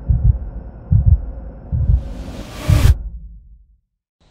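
Logo-intro sound effects: deep double thumps like a heartbeat, about one a second, and a rising whoosh that builds and cuts off suddenly about three seconds in, after which the sound dies away.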